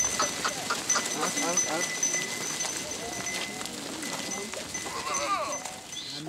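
Goats bleating: a run of short, quavering bleats in the first couple of seconds and another wavering bleat about five seconds in, over a thin steady high tone.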